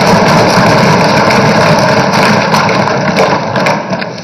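Many hands thumping on wooden assembly desks in a loud, dense, rapid clatter, the customary show of approval in the house. The clatter thins out near the end.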